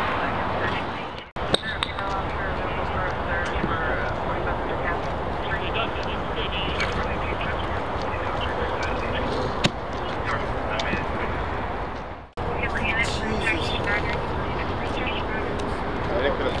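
Fire engine's diesel engine idling, a steady low rumble, with faint voices over it. The sound drops out suddenly twice, about a second in and about twelve seconds in.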